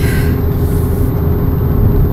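Car cabin noise while driving: a steady low engine and road rumble with a faint constant hum over it.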